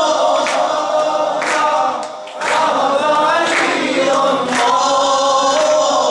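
Maddahi, devotional praise singing: a male voice holding long melodic lines with other voices joining in, over a sharp beat about once a second. The singing breaks off briefly about two seconds in.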